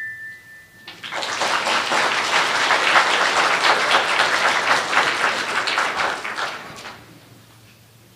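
Audience applauding, starting about a second in and dying away after about six seconds.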